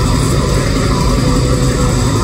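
Heavy metal band playing live in an arena: distorted electric guitars, bass and drums in a dense, loud, unbroken wall of sound.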